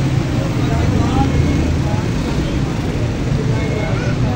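Busy street-stall ambience: a steady low rumble with indistinct voices in the background.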